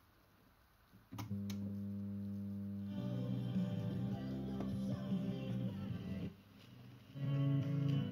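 Electrohome Apollo 862 radio coming on with two clicks about a second in, then music with guitar playing from a station. The music drops away about six seconds in as the tuning dial moves off the station, and another station comes in near the end.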